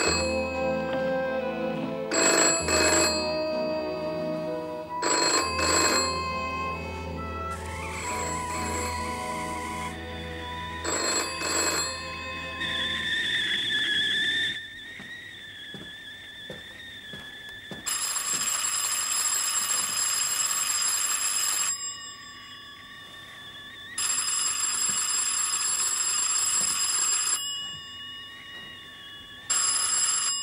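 Music with sharp chord hits gives way, about thirteen seconds in, to a man whistling a tune. A telephone bell then rings twice, each ring lasting about three and a half seconds, with the whistling carrying on quietly between rings. It starts to ring a third time at the very end.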